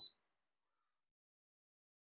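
A single short, high beep from the LiitoKala Lii-M4S battery charger as one of its buttons is pressed, right at the start.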